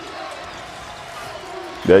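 Basketball game sound: a steady crowd hubbub in an arena with a ball bouncing on the hardwood court.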